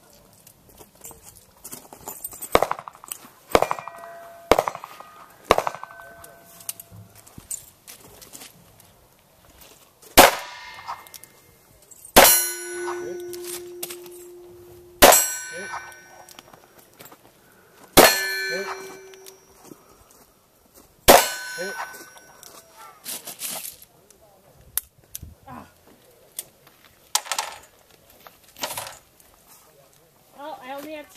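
.38 Special five-shot revolver firing five shots, each two to three seconds apart, at steel plate targets. Most shots are followed by the steel plate ringing on a hit, one ring lasting a few seconds. Fainter metallic clanks come earlier.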